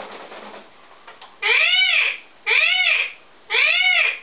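Blue-and-gold macaw giving three loud squawks about a second apart, each call rising then falling in pitch and lasting a little over half a second, the first about a second and a half in. A brief rustling noise comes before them at the start.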